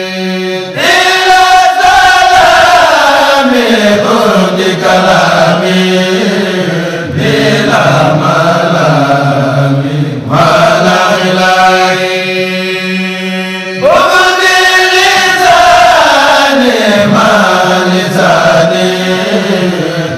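Vocal chanting: long sung phrases that start high and slide down in pitch, with fresh phrases beginning about a second in, about ten seconds in and about fourteen seconds in.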